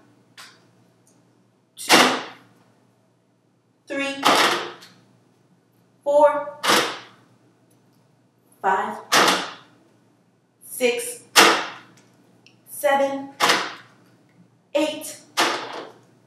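A woman's voice counting aloud slowly, one number about every two seconds with pauses between.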